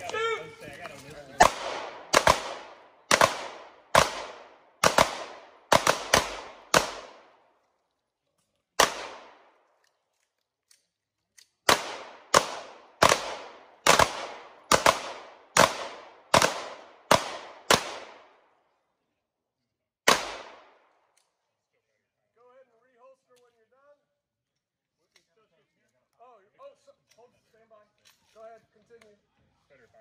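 Three pistols fired in a rapid-fire shooting race, about twenty sharp shots in two fast runs with a short gap between, each shot followed by a brief echo. The last shot comes about twenty seconds in, followed by faint voices.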